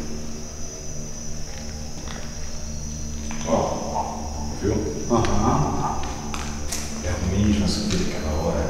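Steady high-pitched insect chirring over a low hum, with two short muffled voice-like noises about midway through.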